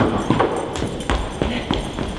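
Footsteps of high-heeled shoes on a hard stage floor: a quick, uneven series of knocks, about three or four a second.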